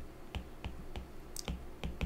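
Faint, irregular light clicks of a stylus tip tapping on a tablet's glass screen during handwriting, about five or six in two seconds.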